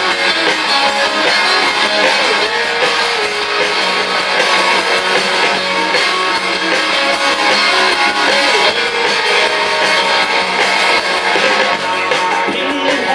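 Live rock band playing an instrumental passage: electric guitars over bass and drum kit, without vocals.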